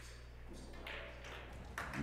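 Two faint clicks of a pool shot, about half a second apart: the cue tip striking the cue ball, then the cue ball striking a Predator Arcos II object ball. A steady low hum runs underneath.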